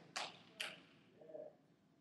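A pause in speech: faint room tone with two brief faint noises in the first second and a faint low murmur a little later.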